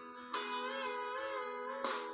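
Instrumental backing music of a country song between sung lines: guitar notes ringing, with a new note entering about a third of a second in whose pitch wavers and slides.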